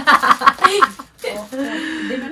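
Women talking and laughing: a quick run of laughter in the first second, then a voice again near the end.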